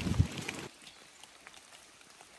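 Wind buffeting the microphone, with a thump or two, cuts off suddenly under a second in. A faint, even hiss of rain follows, with scattered drips.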